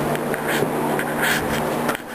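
Lasko electric fan running steadily: a constant hum under an even rush of air, with a couple of brief scuffs about half a second and a second and a half in.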